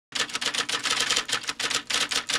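Typewriter-style typing sound effect: a rapid run of sharp key clicks, about ten a second, that stops abruptly.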